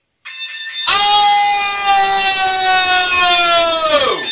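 A man's high falsetto voice holds one long, loud note that sags slowly in pitch for about three seconds, then slides steeply down at the end. It comes after a short opening sound at a different pitch.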